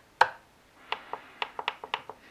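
Clicks from handling a FlySky FS-ST16 RC transmitter: one sharp click as a button is pressed, then a quick run of lighter clicks.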